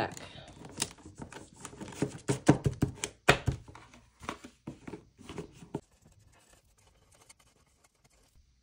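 Paper cash envelopes rustling and knocking as a stack of them is shuffled and pushed into a box. The sound is a quick run of crisp rustles and taps that thins out about six seconds in, leaving only a few faint ticks.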